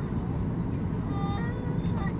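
Steady cabin noise of a Boeing 737-800 on approach with its flaps out: the drone of its CFM56 jet engines and the rush of airflow, heard from inside the cabin, strongest in the low range.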